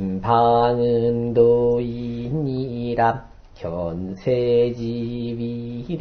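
A man chanting Classical Chinese text in Korean reading pronunciation, in the drawn-out sung style of traditional recitation. He holds long, level notes, with a short pause a little past halfway.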